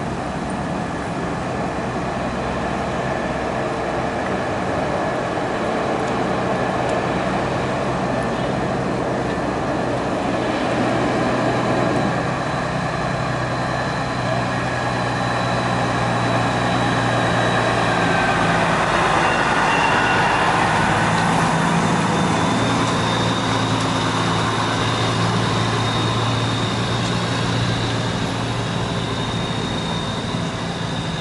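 Slow-moving parade vehicles rolling past, led by a semi-truck tractor whose diesel engine runs with a steady low hum as it passes close. The sound is loudest around the middle.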